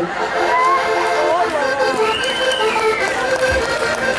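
Diatonic button accordion playing a held-chord instrumental passage between sung verses, over crowd voices and some cheering.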